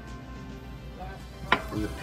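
Faint background music over a steady low hum, with one sharp click about one and a half seconds in.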